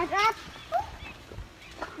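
Brief talking at the start and a short vocal sound, then a quieter stretch with a few faint low knocks.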